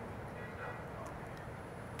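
Faint, steady outdoor background noise with no distinct event: a low, even ambient hum.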